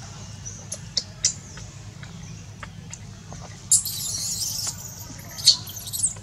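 High-pitched squeaks and squeals from an infant macaque: a few short squeaks in the first half, a squeal lasting about a second past the middle, and a sharp, loudest squeak near the end.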